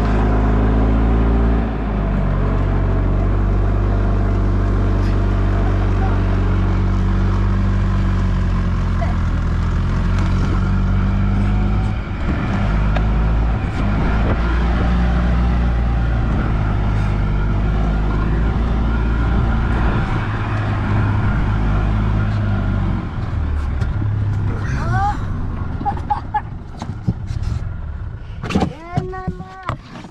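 Gas golf cart engine running steadily as the cart drives through snow, its pitch dipping briefly at the start. It drops away in the last several seconds, when a short voice-like sound is heard.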